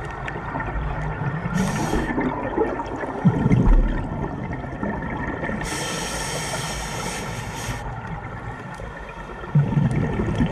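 Scuba regulator breathing underwater: a short hissing inhale, then a louder bubbling exhale, then a longer hissing inhale of about two seconds, with bubbling starting again near the end.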